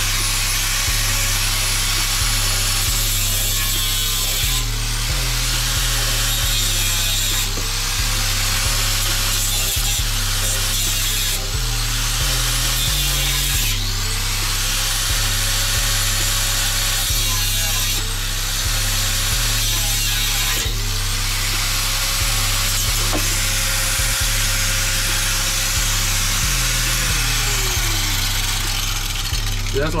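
Angle grinder with a cutting disc cutting through a steel exhaust pipe, its motor winding up and holding speed several times and winding down near the end. Music with a steady bass line plays underneath.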